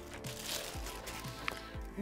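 Background music, with a brief crinkle of a metallic anti-static bag about half a second in as a replacement LCD panel is slid out of it, and a light click near the end.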